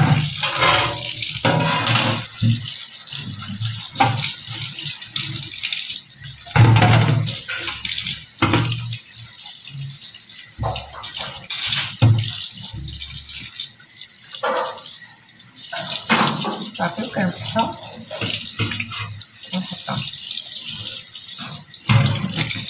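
Kitchen tap running in a steady stream into a stainless steel sink while silver trays are rinsed and scrubbed under it, with occasional knocks.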